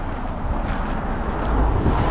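Wind buffeting the microphone, a low rumble that grows stronger in the second half, with a few faint crunches of footsteps on gravel just under a second in.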